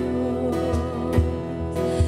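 A live worship band playing a slow song: acoustic guitar and held sung notes over soft low drum beats about twice a second.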